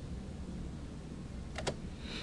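Pause in a narrated lecture: steady low hum and hiss of the recording, then a quick double click near the end, a computer click advancing the presentation to the next slide.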